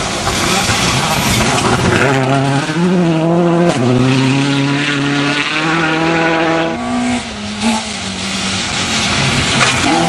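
Rally car engine at high revs on a gravel stage, its note held and then stepping up and down with gear changes and lifts, over the hiss of tyres and gravel. A car passes close by near the end.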